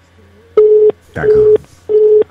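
Telephone busy tone heard over the line: three short, loud beeps of one low steady pitch, evenly spaced about two thirds of a second apart, starting about half a second in. The number called is engaged.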